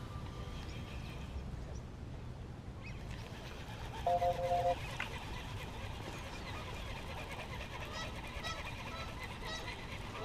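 Quiet outdoor ambience with a low steady rumble, broken about four seconds in by a short honk of a few pulses on two steady pitches, and faint high bird chirps in the last couple of seconds.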